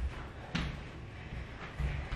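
Footsteps thudding on a hard floor from a man walking while carrying a person on his back, with a sharper knock about half a second in.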